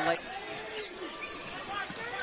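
A basketball bouncing on a hardwood court during live play, under a low murmur of arena noise.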